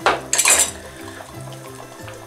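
A brief clatter in the first half-second as a wooden spoon is picked up off a ceramic bowl beside the pot, over soft, steady background music.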